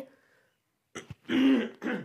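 A person clearing their throat: a short click, then a brief low vocal rasp about a second in, and a quick burst at the end.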